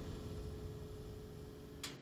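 Low rumbling drone of a horror trailer's sound design, slowly fading, with a faint steady hum tone over it. A short sharp click near the end.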